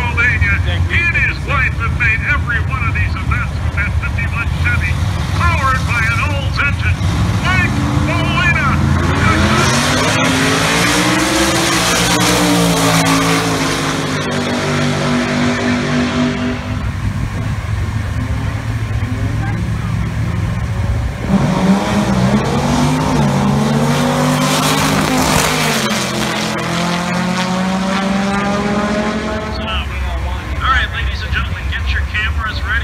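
Drag-racing gasser cars' engines: idling at the starting line, then revving hard as they launch about eight seconds in, the sound rising and falling as they run down the strip. A second rise and fall of engine noise follows about twenty seconds in.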